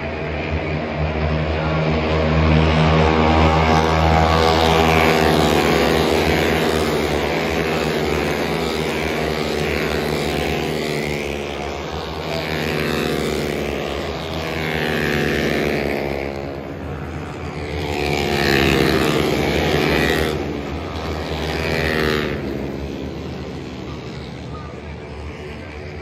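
Racing motorcycles passing along a circuit's main straight one after another, their engine notes rising and falling in several swells as they go by.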